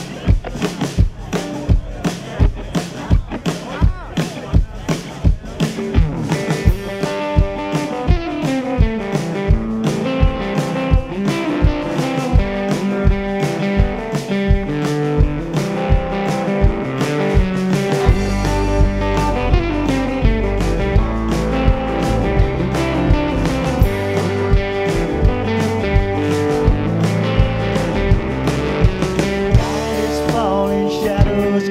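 Live country-rock band playing an instrumental intro: a steady drum beat with electric guitar and fiddle lines that come in about six seconds in. A heavier bass sound joins about eighteen seconds in.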